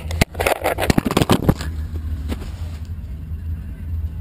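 Vehicle engine running with a steady low drone, heard from inside the cab, with a cluster of knocks and rattles in the first second and a half.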